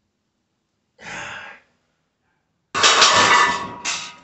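A weightlifter's breath about a second in, then a loud, heavy exhale starting sharply near the end of a set of barbell bench presses.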